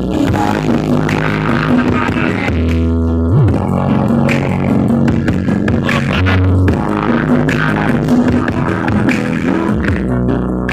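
Loud electronic dance music blasting from a truck-mounted sound system with eight subwoofer cabinets, heavy with sustained bass. Two strong deep bass notes come out about two and a half seconds in and again just past six seconds.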